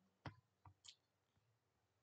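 Near silence with three faint computer mouse clicks in the first second.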